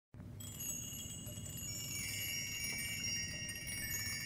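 Quiet opening of a jazz recording: chimes ringing, high sustained notes entering one after another and hanging on, over a faint low rumble.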